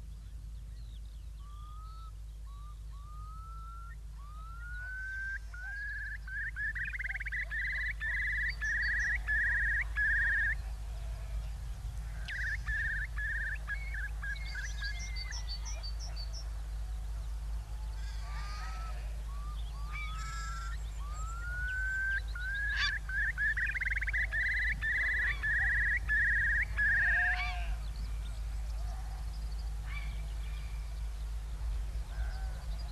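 A wild bird calling in two long bouts, each starting with separate rising whistles that quicken into a run of rapid repeated notes, with a shorter run between them. A steady low hum runs underneath.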